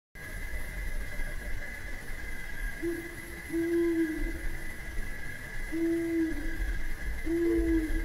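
A dove cooing: four low, even coos a second or two apart, the last slightly higher, over a steady high drone.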